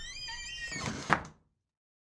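A faint creaking squeak that rises in pitch, then a short thump about a second in.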